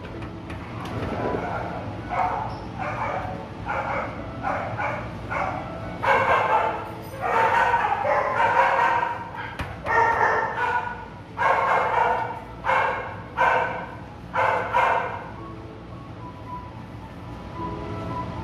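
A dog barking repeatedly in a long string of barks that get louder about six seconds in and stop a few seconds before the end, over background music.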